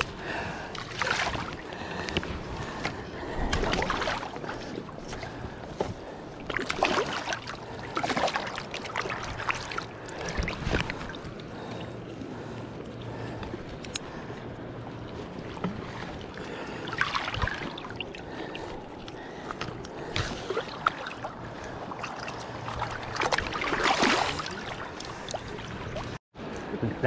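Handling noise of a sockeye salmon being worked out of a dip net's mesh and handled on the bank: irregular rustles and knocks at uneven intervals over a steady background wash.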